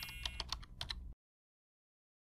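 Rapid keyboard-typing clicks, about eight to ten a second, used as a sound effect while title text appears letter by letter. They cut off abruptly a little over a second in, leaving dead silence.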